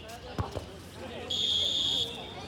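A dodgeball thumps twice on the hard court about half a second in, then a whistle sounds one steady, high blast of under a second near the end, over voices from around the court.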